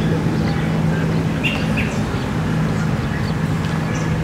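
Outdoor ambience with a steady low hum throughout. Two short bird chirps come about a second and a half in.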